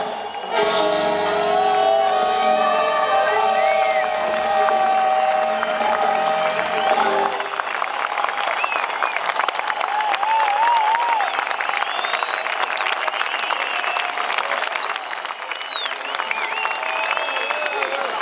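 A live blues band with horns holds its closing chord, which ends about seven seconds in. Then the crowd applauds and cheers, with a high whistle near the end.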